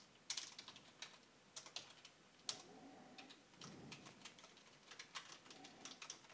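Faint computer-keyboard typing: irregular keystroke clicks, some in quick runs and others spaced apart, as lines of code are entered.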